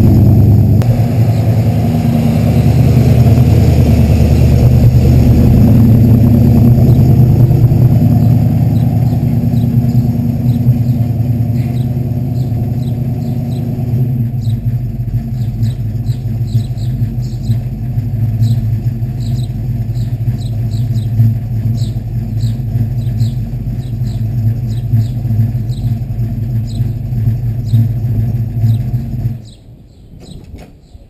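1969 Buick GS400's 400 cubic-inch V8 running steadily with a deep exhaust note, loud at first and farther off after a cut about halfway through; the engine shuts off suddenly about a second before the end. Birds chirp repeatedly through the second half.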